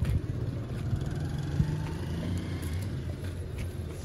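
Outdoor street background noise: a steady low rumble with faint general hubbub.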